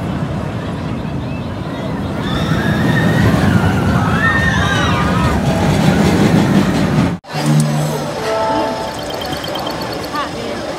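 The Anaconda steel looping roller coaster's train rumbling along its track, with riders' rising-and-falling screams in the middle. About seven seconds in, the sound cuts off suddenly and gives way to a few steady held tones.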